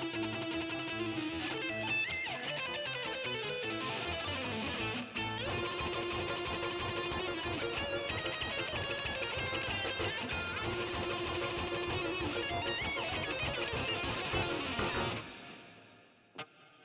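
Electric guitar played in a fast, busy run of notes that stops abruptly about a second before the end.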